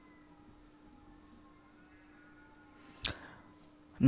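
Quiet room tone with a faint steady hum, broken by one short sharp click about three seconds in.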